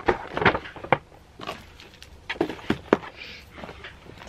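Paper gift bag crinkling and rustling as small boxed presents are handled and packed into it, a run of short irregular crinkles and taps.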